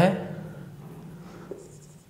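Marker pen writing on a whiteboard: faint strokes in the second half.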